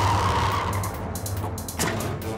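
Cartoon sound effect of a car's tires skidding as it brakes and swerves hard, over background music.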